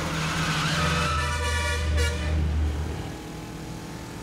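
Motorcycle engine running as the bike approaches, with a vehicle horn sounding one steady honk of about two seconds starting about a second in.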